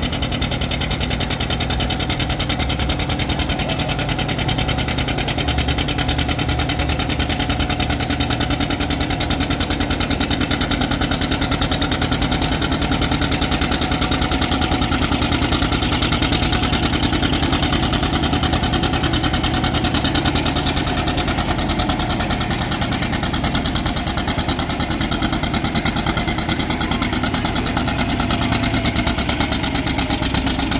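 John Deere Model R's big-bore two-cylinder diesel engine working hard under load while pulling a weight-transfer sled: a steady, rapid run of evenly spaced exhaust beats.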